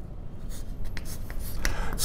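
Chalk writing on a chalkboard: a few short chalk strokes as letters are written, with a steady low hum underneath.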